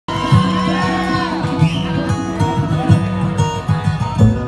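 A live bluegrass band plays the instrumental opening of a song: upright bass and acoustic guitar keep a steady pulse under plucked strings, with a lead melody that slides between notes.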